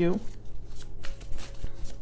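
A tarot deck being shuffled by hand: a run of quick, irregular papery flicks and slides of the cards.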